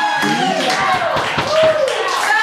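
An audience clapping, with voices calling out over the applause.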